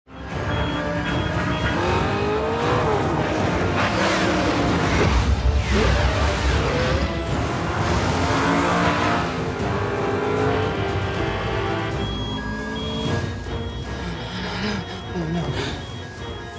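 Action-movie soundtrack: car engines racing and revving over a music score, loudest in the first half and thinning out about three-quarters of the way through.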